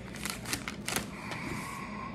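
Paper crackling with short taps as hands press and rub a sheet of scrap paper down over freshly glued book pages, settling into a soft, steady rubbing in the second half.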